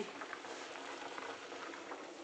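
Potatoes boiling in water in a stainless steel pot, a steady bubbling with faint small pops.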